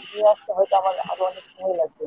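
Only speech: one person talking continuously in Bengali, heard over an online video-call link.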